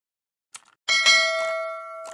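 Subscribe-button animation sound effects: a short mouse click about half a second in, then a bright bell ding that rings on and fades out over about a second and a half.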